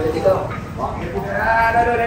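A baby monkey's wavering, drawn-out cry, at its longest and loudest in the second half.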